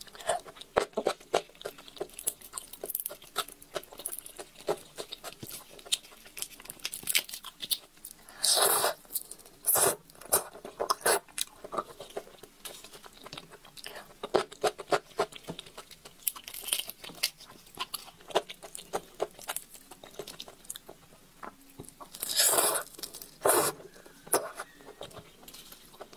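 Close-miked eating of raw red shrimp: the shells crack and peel in many small crisp clicks. A few longer wet sucking sounds come as the heads are sucked, the longest near the end.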